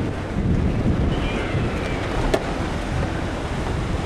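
Wind buffeting the camera microphone, a steady rumble, with one sharp click a little past the middle.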